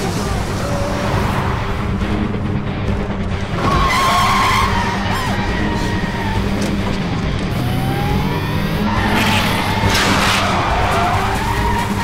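Car engines revving hard with tyres skidding and squealing on gravel, the squeals coming about four seconds in and again near the end, over background music.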